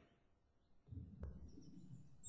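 Near silence: faint low rumble, with a single faint click about a second in.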